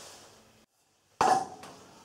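A single sharp knock about a second in as a block of timber is set down on top of a neodymium magnet, dying away within half a second. Before it, a man's voice trails off into a moment of dead silence.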